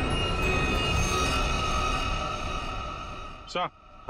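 Suspenseful background music with sustained steady tones over a low rumble, fading out near the end. A short spoken exclamation follows just before the end.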